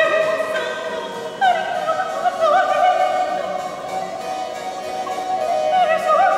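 Soprano singing a baroque aria with vibrato, rising onto a long held note about a second and a half in, over harpsichord accompaniment, in a resonant church.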